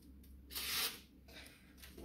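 Freshly sharpened kitchen knife slicing through a glossy paper flyer, a paper-cutting test of the edge: one clear cut about half a second in, then two fainter, shorter paper rustles.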